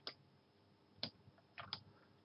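Near silence broken by a few faint clicks of computer mouse buttons and keys: one at the start, one about a second in, and two close together near the end.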